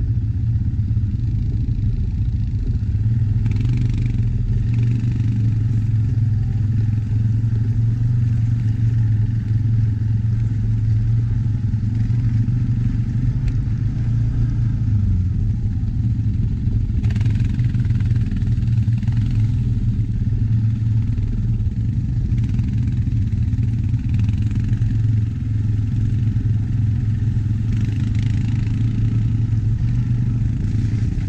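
ATV engine running steadily at low revs over a rough trail, its pitch dipping briefly about halfway, with a few short bursts of higher rattling noise.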